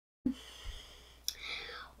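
Quiet room tone that starts abruptly with a click, then a small click about a second in and a faint breathy sound from a child just before he speaks.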